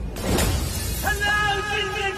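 Glass-shattering sound effect with a sudden crash at the start, then, about a second in, a long held musical note.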